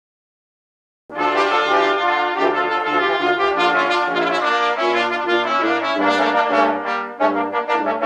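A brass ensemble with tuba playing a tune, starting abruptly about a second in out of silence. A low tuba line moves note by note beneath the higher brass, and near the end the notes become shorter and more detached.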